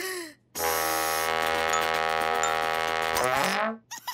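A short cartoon chick cry, then a long, loud blast from a brass horn held on one note, which slides down in pitch as it dies away near the end.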